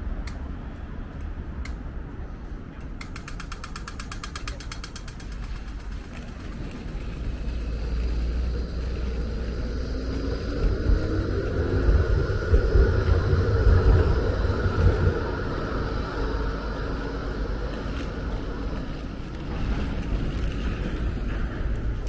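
Pedestrian crossing signal ticking slowly, then switching to a rapid ticking for a moment about three seconds in as the walk phase starts. Then an electric tram passes close by, its low rumble loudest around the middle, over steady city traffic.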